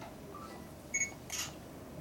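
A still camera gives one short, high beep about halfway through. A sharp shutter click follows a moment later, over quiet room tone.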